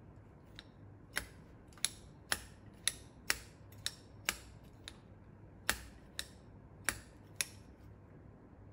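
Hand-operated manual tufting gun clicking with each squeeze of its handles as it punches yarn into the backing cloth: about a dozen sharp clicks, roughly two a second, unevenly spaced.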